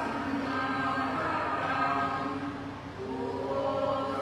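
Buddhist group chanting: many voices together on long held notes, with a brief break about three seconds in and the next note pitched a step higher.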